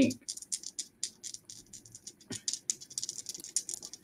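Faint, quick, irregular clicking of a computer keyboard being typed on, several keystrokes a second, with a brief pause partway through.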